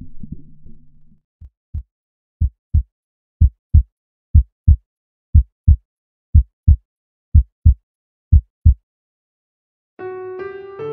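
Slow, steady heartbeat: eight lub-dub double thumps about one a second, the first few growing louder, stopping shortly before the end. A low hum fades out in the first second.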